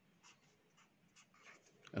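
Felt-tip marker writing on paper: faint, short strokes of the tip scratching across the sheet, several in quick succession.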